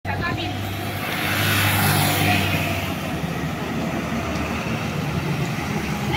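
Volkswagen 17.230 EOD diesel city bus passing close by, its engine drone and road noise swelling to a peak about two seconds in, then holding steady.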